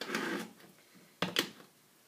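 Bars of handmade soap being handled on a tabletop: a short rustle, then two quick knocks a little over a second in.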